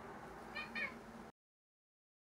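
A cat giving two short, high meows in quick succession; then the sound cuts off abruptly.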